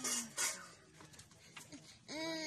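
A young boy sick with meningitis whimpering between cries: a short low moan trails off, then two sharp sobbing breaths in the first half second, and it goes faint after that.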